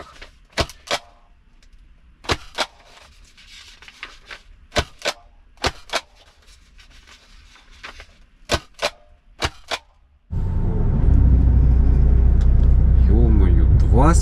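Self-inking rubber stamp being pressed onto paper documents: a sharp click-clack pair for each impression, six times. About ten seconds in, this gives way abruptly to a loud, steady low rumble from the moving truck.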